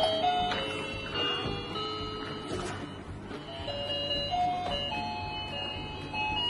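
A simple, tinkly electronic melody of plain beeping notes stepping up and down in pitch.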